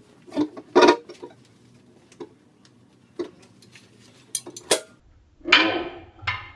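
Scattered knocks and sharp clicks, then about five and a half seconds in an electric guitar chord is strummed through an amplifier and rings out briefly.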